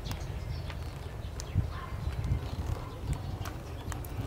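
Scattered light clicks and knocks of woody bare-root bougainvillea stems being handled, over a steady low rumble.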